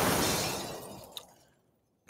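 A sudden crash of noise that dies away smoothly over about a second and a half, with a small click near the end.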